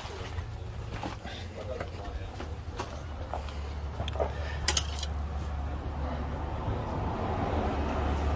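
A steady low hum that slowly grows louder, with a few light clicks and knocks from hands working among the parts of an old car's engine bay, the sharpest about halfway through.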